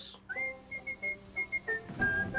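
A whistled tune with soft music beneath it. The whistle slides up about a third of a second in, then repeats short high notes at the same pitch and dips slightly near the end.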